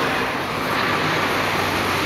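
A car driving past close by, a steady rush of engine and tyre noise on the road.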